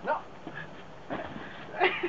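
A Czechoslovakian wolfdog gives a brief cry near the end, during a jumping-training session.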